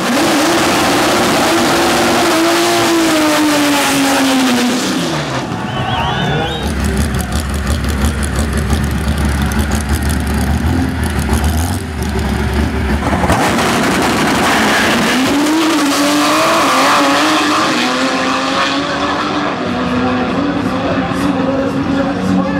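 Turbocharged Chevrolet Caravan drag car's engine running loud, its pitch falling and rising with the revs, broken by abrupt changes; a steady low drone fills the middle stretch.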